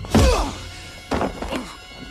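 A heavy, dull thunk about a quarter of a second in, then fainter knocks about a second later.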